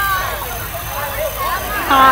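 Children's voices calling out and talking over each other, high-pitched and excited, over a low, steady background noise.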